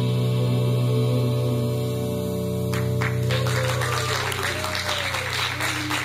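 A band's final chord rings out as long held notes on bass and keyboard, and applause breaks in over it. The first few claps come near the middle, and then the clapping turns full, with a few cheers rising and falling over it.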